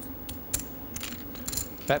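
A few sharp clicks of poker chips being handled at the table, one about half a second in and a quick cluster around a second and a half, over a low steady room hum.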